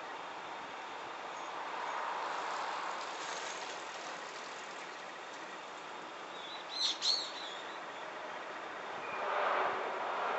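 A small bird chirps twice in quick succession about seven seconds in, high and brief, over a steady outdoor background hiss that swells a little twice.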